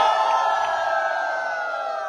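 A crowd shouting and whooping together in one long, many-voiced cheer that slowly sags in pitch and fades away near the end.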